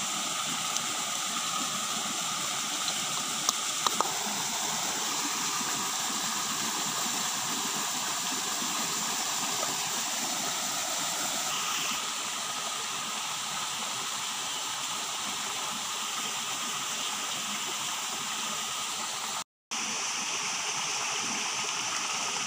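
A stream running steadily over rocks, an even rush of water, with a few light clicks about three to four seconds in. The sound breaks off for a moment near the end.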